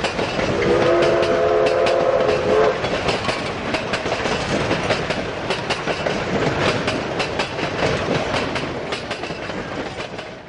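Steam train under way: steady rumble and clatter of wheels over the rail joints. Near the start the locomotive's multi-tone steam whistle blows once for about two seconds. The running sound slowly gets quieter toward the end.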